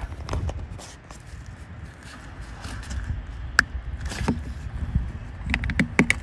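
Plastic licence-plate lamp housing handled as a new bulb is pressed into it, with one sharp click a little over halfway through as the bulb snaps into place, over a low rumble.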